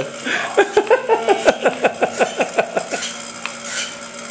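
A woman laughing in a quick run of short, falling "ha" sounds for about two and a half seconds, over a faint steady low hum.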